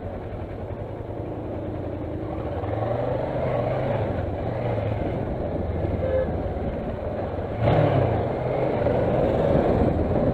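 Kawasaki Versys motorcycle engine running at low road speed, with the throttle opened in steps so the engine note rises several times, and a louder surge of throttle about three quarters of the way through.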